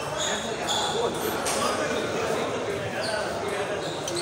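Table tennis balls ticking off tables and paddles in a large hall, a few sharp clicks with two clear ones in the first second, over background chatter.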